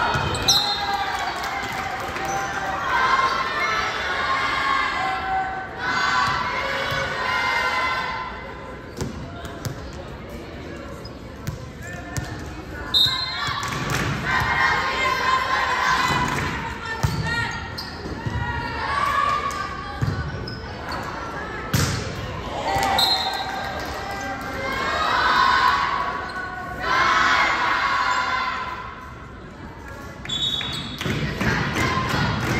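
Indoor volleyball rally: sharp strikes of the ball echoing in a gymnasium, with players' and spectators' voices calling and shouting throughout.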